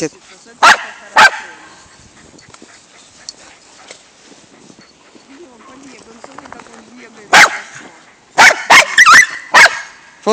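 Welsh corgi barking: two sharp barks about a second in, a quiet stretch, then one bark and a quick run of barks near the end.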